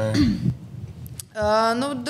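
A brief throat clearing in the first half-second, followed about a second later by a woman drawing out "Nu…" as she begins to answer.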